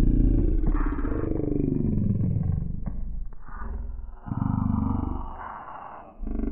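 A person's voice run through a voice-changer app, pitched very deep and distorted so that no words come through. Its pitch slides up and down, with a short break a little after four seconds in.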